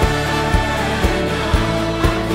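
Live worship song: a man and a woman singing lead with a choir and orchestra, over a steady low beat of about two a second.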